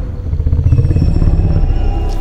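A loud, deep rumbling drone from trailer sound design, pulsing slightly, with faint thin high tones above it.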